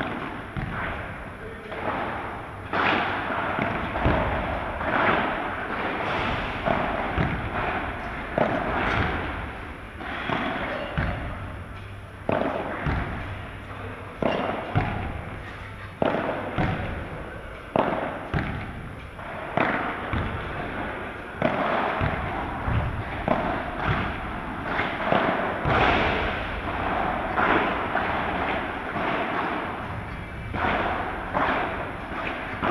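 Padel rally in a large echoing hall: repeated sharp hits of the ball off solid padel rackets, with bounces off the court and glass walls, coming every second or two and each ringing on in the hall's echo.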